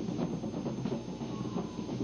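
Live band performing noise music: a dense, rumbling wall of sound with rapid, uneven clattering hits.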